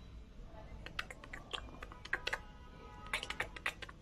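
Pencil writing on a paper workbook page: a faint run of light clicks and taps as the lead strikes and strokes the paper, thickest near the end.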